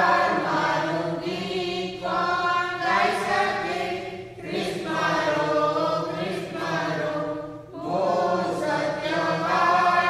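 Church choir singing with sustained notes, in phrases of a few seconds separated by brief breaths.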